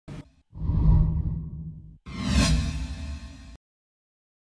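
Programme-intro sound effects: a short blip, then two whooshes over a deep low boom, each swelling and fading away. The second sweeps up in pitch and cuts off abruptly.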